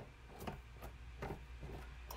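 A handful of faint, irregular clicks and taps from a camera mount being handled and adjusted to reposition the camera.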